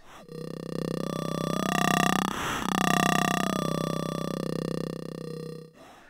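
Macro Oscillator module of a modular synthesizer playing a sustained low growl with an almost vocal quality. Its tone colour shifts as a knob on the module is turned, changing most around the middle, and the sound stops just before the end.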